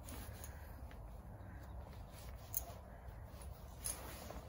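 Faint handling sounds of a headcollar being fastened on a pony: quiet rustling with two small clicks, one past the middle and one near the end, as the buckle is done up.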